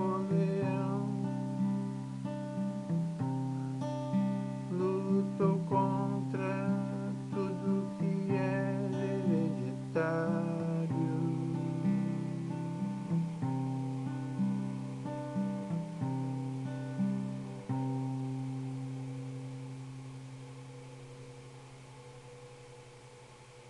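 Acoustic guitar playing held chords with picked single notes above them, sparser in the second half. A final chord struck about 18 seconds in is left to ring and fade away.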